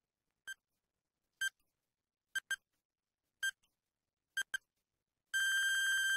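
Countdown timer beeping: short, high electronic beeps about a second apart, two of them doubled, then a long steady beep near the end as the count reaches zero.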